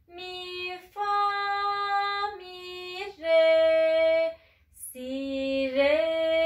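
Ney, the Turkish end-blown reed flute, playing a slow melody of about five held notes, with a short gap for breath near the end.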